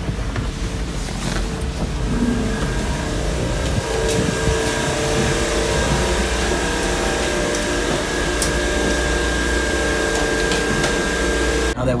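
Steady hum and noise of shipboard machinery and ventilation, with a few steady tones held through it; a thin, higher whine joins a few seconds in.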